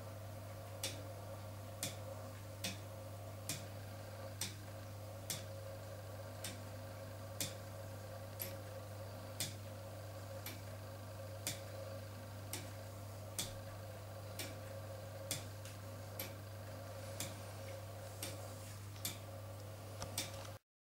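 Meccano clock's foliot-and-verge escapement ticking at about one tick a second, as the verge pallets catch the bolt teeth of the 11-tooth escapement wheel while the weighted foliot swings to and fro. A steady low hum runs underneath.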